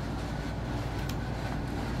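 Steady low background hum and hiss, with one faint click about a second in.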